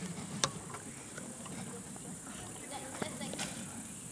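Faint murmur of voices outdoors with a few sharp clicks, the loudest about half a second in and two weaker ones near the end.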